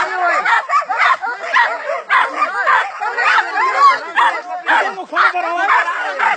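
Several men shouting over one another while a dog barks and yelps at a captured porcupine.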